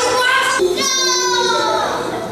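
A high-pitched voice holds one long drawn-out sung or called note for over a second, sliding slightly down in pitch. A little voice comes before it.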